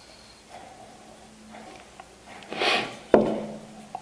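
Faint scratches of a pencil marking lines on the end and edge of a small wooden board. About two and a half seconds in comes a short rushing noise, then a sharp wooden knock with a brief ring, the loudest sound, and a small click near the end.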